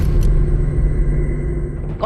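Low, steady rumbling drone of a suspense underscore, with a faint held tone above it.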